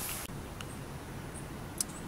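Faint steady background noise with a short rustle at the start and a single faint click near the end.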